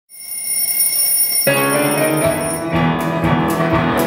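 Live band intro to the opening number: a steady high bell-like ringing tone first. Piano chords come in about a second and a half in, with bass notes and then drums joining near the end.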